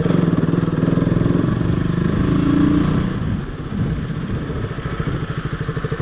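Motorcycle engine running as the bike is ridden over rough off-road ground. The engine note drops off about halfway through, then builds again.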